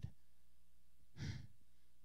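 A man's single short breath or sigh into a handheld microphone about a second in, over a faint steady low hum.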